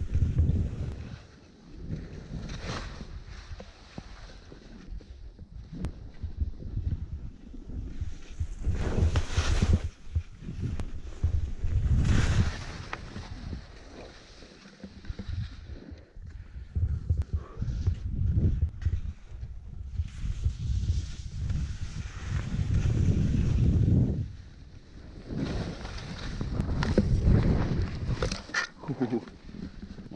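Skis scraping and swishing over packed snow in a series of turns, each turn a loud hissing swoosh, under heavy wind buffeting on the camera microphone.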